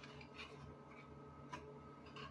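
Near silence: faint room tone with two soft clicks, about half a second in and again about a second and a half in, from a cardboard hair-dye box being handled.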